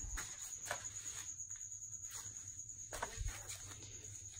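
Faint handling noises: scattered light clicks, taps and shuffles as a person moves about and picks up a metal headlight trim ring, over a steady faint high-pitched whine.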